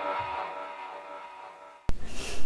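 The last chord of a heavy rock song ringing out and fading away, cut off by a single sharp click near the end.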